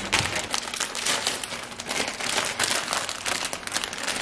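Plastic instant-noodle packet (Samyang Buldak Carbonara) crinkling and rustling in the hand as it is handled and opened, with dense, irregular crackles throughout.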